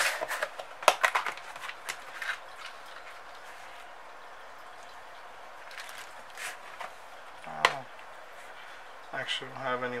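A few light clicks and rustles from small items being handled on a workbench, then a quiet stretch. About two-thirds of the way through comes one sharp click and a brief vocal sound, and speech starts near the end.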